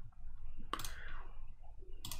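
A single computer mouse click about three-quarters of a second in, over faint low background noise.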